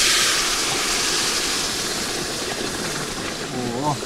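Hot grape molasses (pekmez) poured into flour roasting in hot butter and oil, sizzling: a loud hiss that starts suddenly and slowly fades as the pour goes on. A voice says "Oh" at the end.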